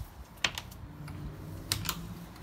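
A few sharp clicks and taps from a hand on a closed fiberglass fish box lid and its stainless flush latches: one about half a second in and a quick pair near the end, over a faint low hum.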